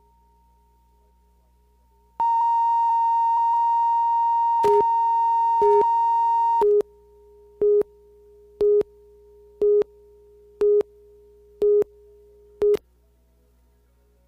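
Videotape slate line-up tone and countdown beeps: a steady high tone begins about two seconds in and runs for about four and a half seconds, with shorter, lower-pitched beeps once a second joining near its end and carrying on alone after it stops, nine beeps in all.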